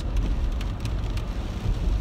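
Steady low rumble of road and tyre noise inside a moving car's cabin.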